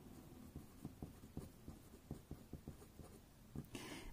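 Faint scratching of a pen writing words by hand on paper, in many short strokes.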